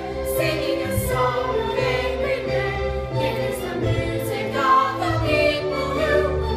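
A group of girls singing a song together in unison over instrumental accompaniment, with held notes that change every second or so.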